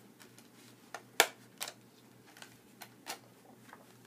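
Clicks and taps from handling a Blu-ray steelbook case and its packaging: about seven separate sharp clicks spread over a few seconds, the loudest about a second in.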